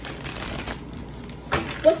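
Deck of oracle cards being shuffled by hand: a quick run of papery riffling for under a second, then quieter handling of the cards.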